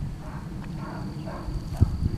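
Miniature pony mare and foal moving about on grass: soft faint sounds over a steady low rumble on the microphone, with one sharp knock near the end.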